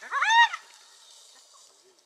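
Spotted hyena giving one short, high-pitched squeal that rises and then falls, about half a second long, while it is being harassed by African wild dogs.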